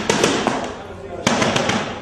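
Shouting voices in a live music hall right after a heavy rock song stops, with a few sharp bangs, the loudest about a second in.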